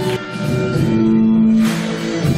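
Live band playing an instrumental passage with guitar and held notes that change about a second in, before any singing.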